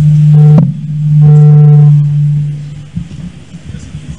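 A loud, steady low-pitched tone, held twice: briefly at first, then for about a second and a half before it fades.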